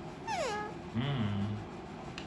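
Alexandrine parakeet giving a short call that falls steeply in pitch, followed about a second in by a brief low, voice-like sound.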